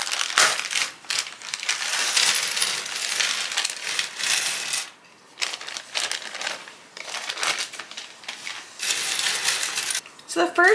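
Small plastic jigsaw puzzle pieces pouring out of a plastic bag onto a table, a dense clatter for about five seconds. After a brief pause, scattered clicks follow as the pieces are spread by hand.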